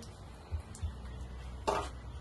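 A brief splash of water near the end, over a low background rumble, as something is being washed.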